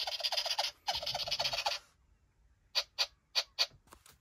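Battery-operated plush toy rabbit running: two stretches of rapid rattling chatter in the first two seconds, then four short bursts about three seconds in. The toy has only just come to life on fresh batteries and seems to work, though not fully right.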